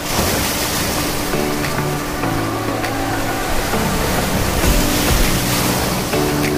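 Small sea waves breaking and washing up over a sandy beach, a steady rush of surf that swells a little about five seconds in, with soft background music playing underneath.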